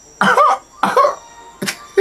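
A person coughing twice in short bursts, followed by a sharp click.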